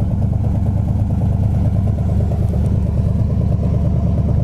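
Pontiac 400 four-barrel V8 idling steadily, heard close behind the car at its exhaust tips.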